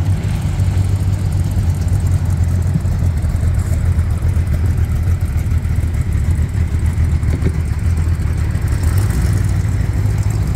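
Classic car engine idling with a steady, deep low rumble.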